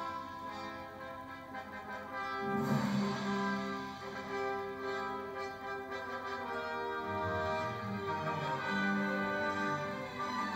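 Orchestral music with brass and long held notes and chords.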